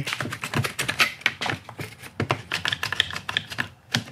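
Rapid clicking and light knocks from a one-handed bar clamp being worked and a thin wooden strip being shifted in its jaws, ratchet-like clicks coming in quick runs.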